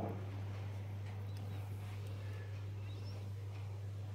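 A steady low hum runs under faint background noise, with a few brief, faint high chirps.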